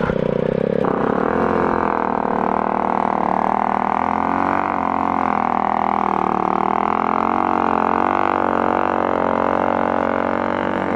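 Motorcycle engine idling close to the microphone, a steady droning note that wavers only slightly.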